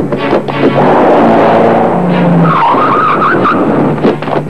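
Film soundtrack of a car skidding over music, with a wavering tyre squeal lasting about a second past the middle.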